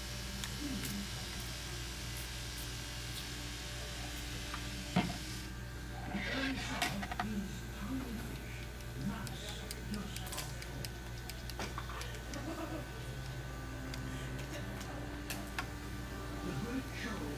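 Steady low hum of the room with faint voices in the background, over small clicks and rustles of plastic bottles and a metal airbrush being handled as dye is squeezed into the airbrush cup. There is a sharp click about five seconds in and a brief rustling burst just after.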